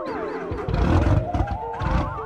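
Music with electronic sound effects: a cluster of tones sliding downward, then a warbling tone that climbs, over low thumps about halfway through.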